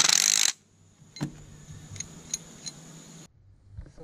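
Cordless power driver with a socket running in one short burst of about half a second, spinning two nuts tight against each other on a long bolt. A few light metal clicks follow.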